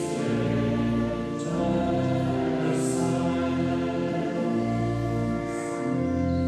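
A choir singing a slow hymn in long, held chords: the offertory hymn during the preparation of the gifts.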